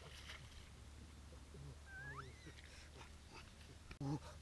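Near silence over a low hum, with a faint animal call that glides upward briefly about two seconds in.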